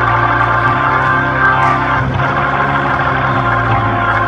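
Organ playing held chords, moving to a new chord about two seconds in.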